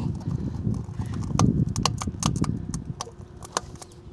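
Irregular clicks and scrapes of a small metal-tipped tool probing inside an open Rain Bird 100-HV sprinkler valve body, prying at a rock lodged in it. The rock is the owner's suspect for why the valve won't shut off.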